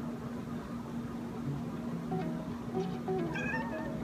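A domestic tabby cat meowing once, a short arching call about three and a half seconds in, over background music with a steady tone and short stepped notes.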